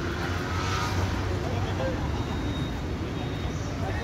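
Steady low background rumble, like road traffic, with faint distant voices.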